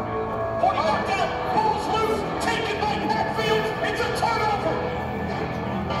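Highlight-film soundtrack played over speakers in a large hall: a steady music bed, with a play-by-play announcer's raised, excited voice calling the action over it from about half a second in until about four and a half seconds.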